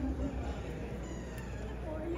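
Indistinct voices in a large hall, with a held tone ending just after the start.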